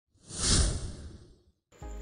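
A whoosh sound effect that swells and fades within about a second. After a brief silence, a steady low hum starts near the end.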